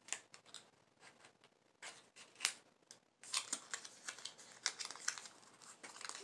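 Cosmetic packaging handled by hand: scattered light clicks and taps, then a denser stretch of small rustling and crinkling from about halfway.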